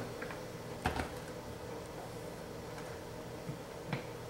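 Hard plastic lid being pressed onto a Vitamix blender jar: one sharp clack about a second in and a couple of light clicks near the end, over a faint steady low hum. The blender motor is not running.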